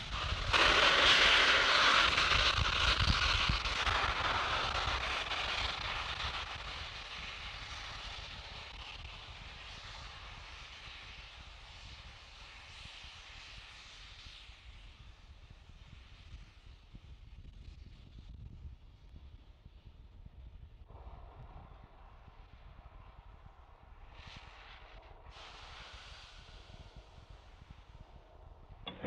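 Rushing hiss of gas venting from a Falcon 9 rocket and its pad. It is loudest at the start and fades over about six seconds to a low, steady hiss and rumble.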